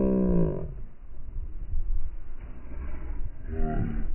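A drawn-out voiced call, like a long 'whoa' or moo, held and then falling in pitch, ending just under a second in. A shorter call follows near the end, over a steady low rumble.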